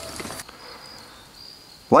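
Night insects, crickets, trilling in a thin, high, steady tone that fades in and out, with a man's laugh right at the end.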